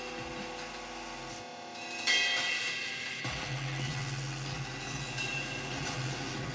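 Free-improvised live music: held tones fade out, then about two seconds in a sudden cymbal-like crash rings and slowly dies away, and a steady low drone comes in soon after.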